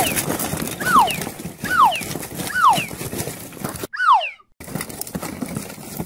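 Cartoon sound effect: a short falling whistle, repeated five times about once a second, each marking an object tossed out of a chest, over a steady rustling clatter of rummaging.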